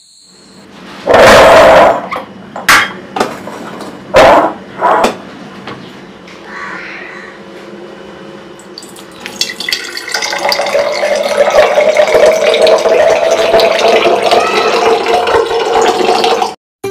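Liquid poured from a glass pot into an empty glass jar: a steady splashing that starts a little past halfway and rises slowly in pitch as the jar fills. Before it, a few loud sudden sounds in the first five seconds.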